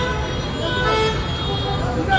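Road traffic rumbling, with a vehicle horn held in one steady note that stops about a second in, and faint voices.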